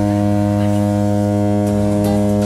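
A boat horn sounding one long, steady, low blast.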